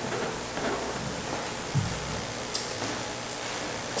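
Steady background hiss of room tone, with no speech, and a faint soft thump a little before the middle.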